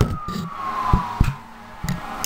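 An emergency vehicle siren wailing, its pitch gliding slowly downward, with a few sharp knocks over it.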